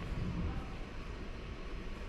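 Room tone: a steady low rumble with no speech.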